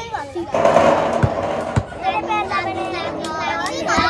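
A plastic ball thrown onto a sloping corrugated tin sheet: it lands with a sudden burst of noise about half a second in and rolls down the metal, with a couple of knocks, over the voices of an onlooking crowd with children.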